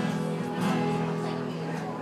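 Live band playing an instrumental gap between sung lines: strummed guitar over steady held notes.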